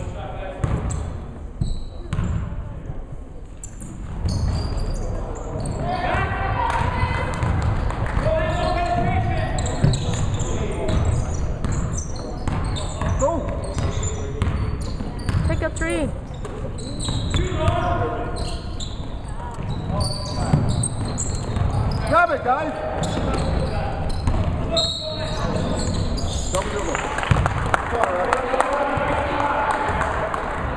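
Basketball game sounds in a gym: the ball bouncing on the hardwood floor, short high sneaker squeaks, and players and spectators calling out, echoing in the hall.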